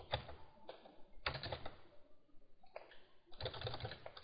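Typing on a computer keyboard: quiet, irregular keystrokes in quick runs with short pauses between.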